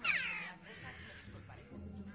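A crow caws once at the start, a harsh call of about half a second that falls in pitch, over a quiet low background.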